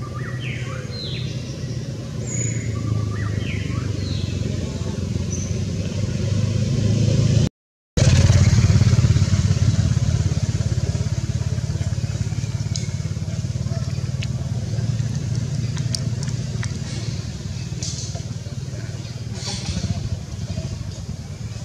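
Steady low motor-like rumble, with a string of short, high rising squeaks in the first few seconds. The sound cuts out completely for about half a second a little before the middle.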